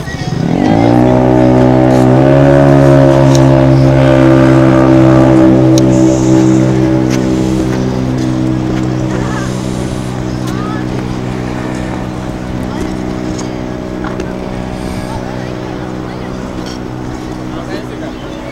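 A loud, low droning tone that rises in pitch during its first second, then holds one steady pitch, fading slowly from about six seconds in.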